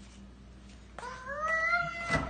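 A baby's drawn-out wordless vocal call beginning about a second in, rising in pitch and then holding steady for about a second and a half.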